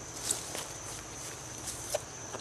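Outdoor summer ambience: insects keep up a steady thin high drone, with faint rustling and a few soft clicks of movement.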